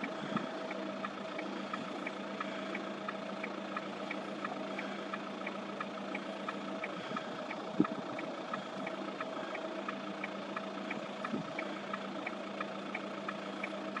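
A motor running steadily: a low hum with a faint, regular tick about three times a second, and a soft thump about eight seconds in.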